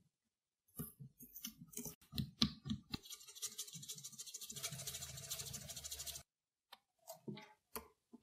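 A small metal carving tool scraping and picking into the skin and flesh of a butternut squash and sweet potatoes, cutting ocarina finger holes. It begins with faint short scrapes and clicks. About three seconds in comes a few seconds of quick, continuous rasping, and two last clicks fall near the end.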